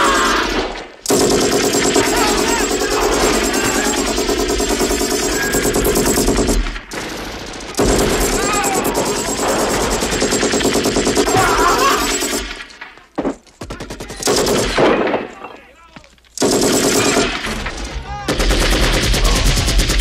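Film soundtrack of rapid automatic gunfire in long continuous bursts, breaking off briefly about one, seven, thirteen and sixteen seconds in.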